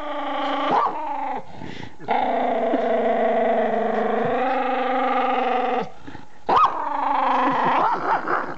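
Dog vocalising while being petted. In the middle it makes one long, steady, drawn-out moan lasting nearly four seconds. About a second in and again near the end it gives short yips that rise and fall in pitch.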